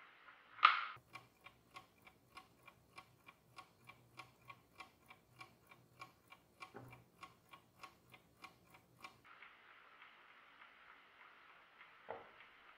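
Soviet Jantar Bakelite-cased mechanical chess clock ticking evenly, about three ticks a second. It follows a single sharp click just under a second in, and the ticking stops about nine seconds in, leaving a faint hiss.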